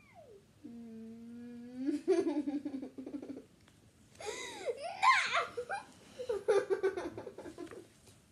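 A girl and an older woman laughing hard in several bursts, after a long held vocal note near the start.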